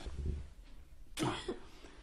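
A person coughs briefly about a second in. Before it comes a low rumble with a click, from body movement on the sofa.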